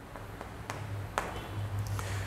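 Chalk tapping and scratching on a blackboard during writing, with a few sharp taps near the middle, over a low steady hum.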